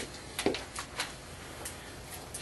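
A few scattered light clicks and knocks, the loudest about half a second in, over faint room noise.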